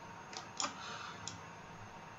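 A few sharp computer mouse clicks, three in about a second, over faint room hiss.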